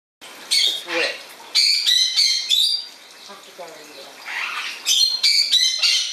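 Parrot screeching in short harsh calls: one about half a second in, a rapid run of half a dozen a second later, and another quick run near the end.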